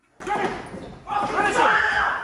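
A person shouting or screaming without clear words, starting suddenly just after the start, dipping about a second in, then louder again, with thuds on a wooden floor.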